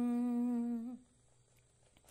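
A solo singer's voice, unaccompanied, holding a steady sung note on the closing hummed 'm' of a Tamil hymn line, which wavers slightly and stops about a second in. Near silence follows.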